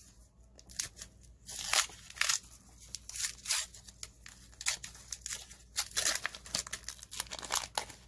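Wax-paper wrapper of a 1990 Donruss baseball card pack being torn open and crinkled by hand: a run of irregular crackles and rips starting about a second in.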